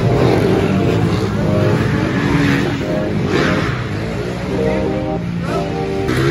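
Several dirt bike engines running in the staging line, idling and blipped up and down in pitch.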